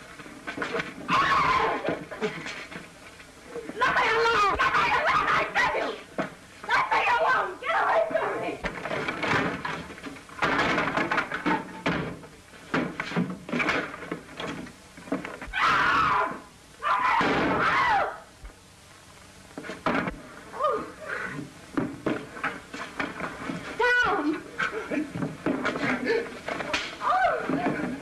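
A fistfight and struggle: shouts and cries in loud bursts of a second or two, with thumps and knocks of scuffling bodies, easing for a moment about two-thirds of the way through.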